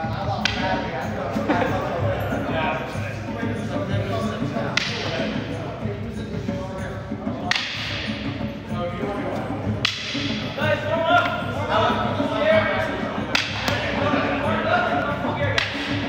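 Sparring sticks striking padded gloves and masks: about six sharp cracks a few seconds apart, over background music and voices.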